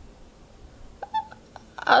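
Quiet room tone, broken about a second in by one brief high-pitched squeak-like sound, then a woman starts to speak at the very end.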